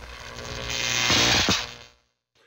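Old-television sound effect: a hiss of static over a low electrical hum, swelling for about a second and a half and then fading away.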